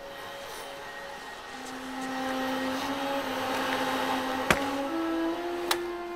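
Canister wet/dry shop vacuum running and sucking up a spill, growing louder over the first few seconds, with two sharp clicks near the end. Sustained soundtrack notes are held beneath it.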